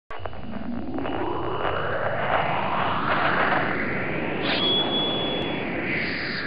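Record label's audio logo sting: a whooshing sweep rising in pitch over a low rumble, then a swoosh with a short high steady tone about four and a half seconds in.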